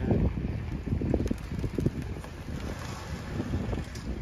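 Wind buffeting the phone's microphone: an uneven, gusting low rumble.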